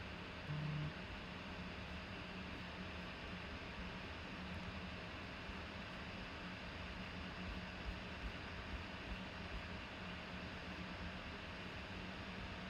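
Quiet room tone: a steady low hiss with a faint low hum, a short low hum about half a second in, and a few faint clicks about two thirds of the way through.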